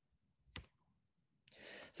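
Near silence broken by a single faint click about half a second in, then a breath drawn in near the end, just before speech resumes.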